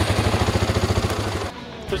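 Polaris ATV engine being started with the brake held, a rapid, even low pulsing that stops abruptly about one and a half seconds in.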